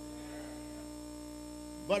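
Steady electrical mains hum through the pulpit microphone's sound system, made of several steady tones, with a man's voice coming back in at the very end.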